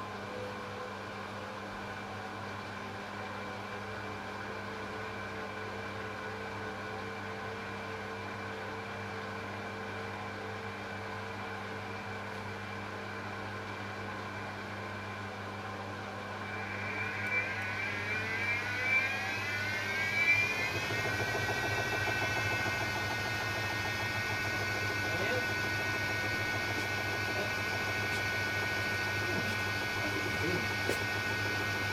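Candy RapidO washing machine in its final spin: a steady hum for the first half, then about 17 seconds in the motor whine rises as the drum speeds up, settling into a steady high whine as the spin holds at 400 rpm.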